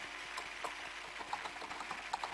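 Computer keyboard keystrokes: a run of light, irregular clicks as code is typed, over a faint steady hiss.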